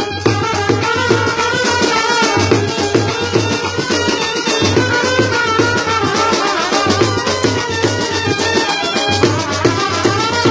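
Live Indian brass band playing: clarinets, saxophone and trumpet carry a melody over a steady beat of drums, including a large bass drum and a drum set.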